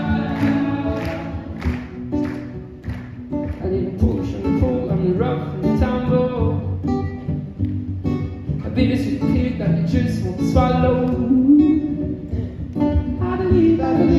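Two acoustic guitars strummed live on stage, with a voice singing over them.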